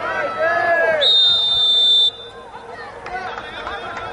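Referee's whistle blown once, a single steady high-pitched blast of about a second that starts and cuts off sharply, with players shouting on the pitch before and after it.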